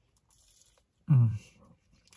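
Faint bite and chewing of a chicken McNugget, then a man's short closed-mouth 'mm' of approval about a second in.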